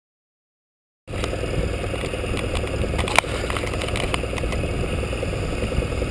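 Silence, then about a second in the steady running sound of a 2009 Suzuki Burgman 650 maxi-scooter's parallel-twin engine on the move, with road and wind noise, starts abruptly. A single sharp click sounds about three seconds in.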